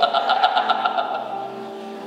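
A man's voice amplified through a microphone and PA in a large hall, one drawn-out word fading away over about the first second, leaving a soft held keyboard note underneath.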